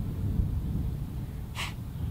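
Wind rumbling on the microphone, with one short breath about one and a half seconds in.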